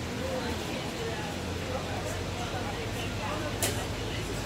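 Indistinct voices talking in the background over a steady low hum, with one short sharp click near the end.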